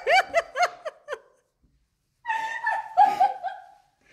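A young woman laughing in quick high-pitched bursts that break off about a second in; after a short pause, a second burst of laughter comes about halfway through.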